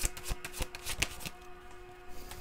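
Tarot deck being shuffled by hand: a rapid patter of soft card clicks that thins out about a second and a half in.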